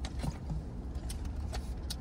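Low steady rumble inside a parked car's cabin, with a few short, sharp clicks and crinkles from handling a plastic drink bottle and food wrappers.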